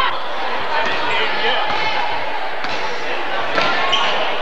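Gym crowd chatter with a basketball bouncing on the hardwood court, a few sharp thuds standing out in the second half.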